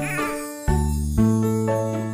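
Instrumental music from a children's song: steady sustained notes changing a few times, with a short wavering high-pitched sound at the start.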